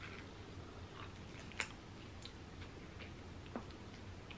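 Faint chewing of a mouthful of corn dog, with a couple of soft clicks.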